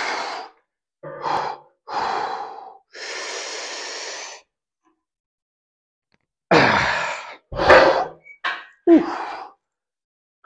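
A man breathing hard under exertion through the last reps of a cable lat-pulldown set, near failure. Sharp gasps and exhales come first, with one longer exhale about three seconds in. After a short gap, a quicker run of loud, strained gasps follows from about six and a half seconds.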